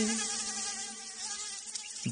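Soft gap between two sung lines of a Tamil film song. A held vocal note fades out at the start, leaving only a faint, high, buzzy instrumental texture until the singing resumes.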